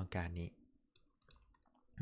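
A few words of speech, then faint computer mouse clicks as a line is drawn in a paint program.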